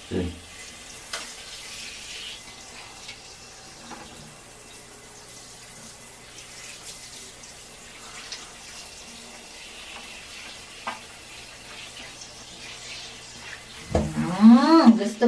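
Handheld shower head running, its spray landing on a cat's wet fur and the tiled shower floor as a steady hiss.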